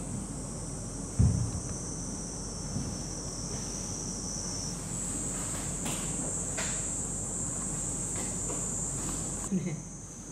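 Steady, high-pitched insect chorus whose pitch shifts upward about five seconds in. A single low thump about a second in is the loudest sound.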